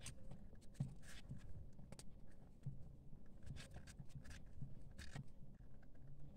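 Paper raffia yarn crackling and rustling faintly in short, irregular scratches as a crochet hook pulls loops through the stitches.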